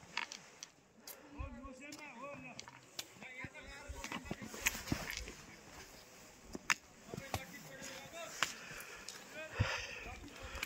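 Faint voices talking off in the background, with sharp taps every second or so from walking on a stone path.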